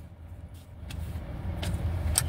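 Low, steady rumble of a car's interior, growing slightly louder, with a few faint clicks.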